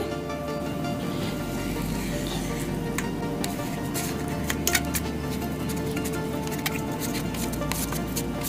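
Steady, soft background music. A few faint clicks come now and then as a knife blade cuts the barfi and touches the steel plate.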